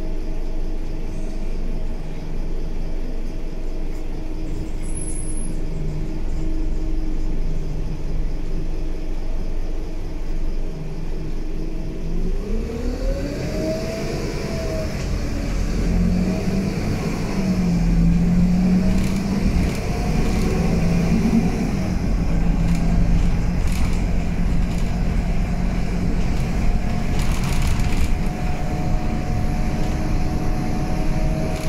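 A Scania K320UB bus's diesel engine heard from inside the saloon, running at a steady low note for about the first twelve seconds. Then the engine note climbs, drops back and climbs again several times as the bus accelerates through its gears, before settling into a steady note near the end.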